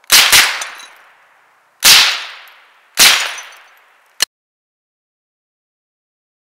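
Three .22 rifle shots, the first about a second and a half before the second and the third a second after that, each trailing off over about a second; the first has a second crack right behind it. A brief sharp click comes about four seconds in.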